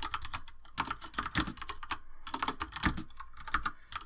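Computer keyboard typing: a quick, irregular run of keystrokes.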